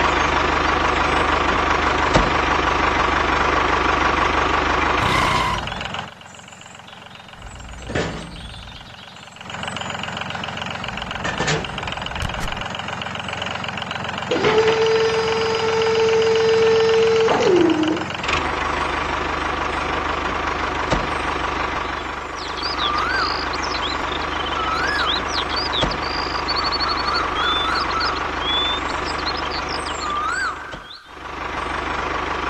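Steady engine running with a low, even hum. It drops away about six seconds in and comes back. About halfway through, a held tone ends in a downward slide, and short high chirps sound over it in the last part.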